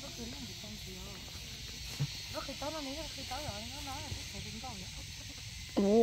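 Soft women's voices talking quietly over a steady high-pitched hiss, with a louder exclamation from one woman right at the end.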